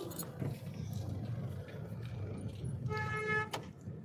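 Low, steady rumble of a car moving in traffic, heard from inside the cabin. About three seconds in, a car horn gives one steady honk of about half a second.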